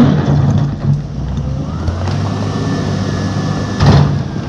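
Fiat-Hitachi W190 wheel loader's diesel engine working steadily under load as the bucket scoops rock and lifts. A high whine rises about two seconds in and holds as the boom goes up. A loud clatter of rock comes near the end.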